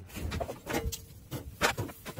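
Clanking and scraping of metal grilling gear as grilled meat is taken off a charcoal grill grate with tongs into an aluminium foil pan. There are two sharper clanks, one a little before halfway and one near the end.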